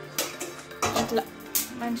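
Stainless steel bowl of raw fish pieces clinking and knocking a few times as it is handled on the counter, with background music and a voice starting near the end.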